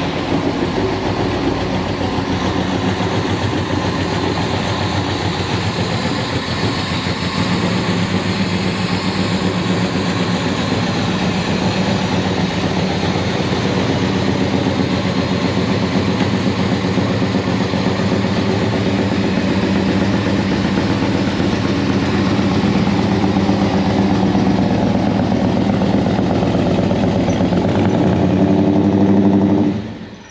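A Plymouth Fury III's stroked 383 big-block V8 running steadily at idle as the car is moved slowly out of the garage onto the driveway.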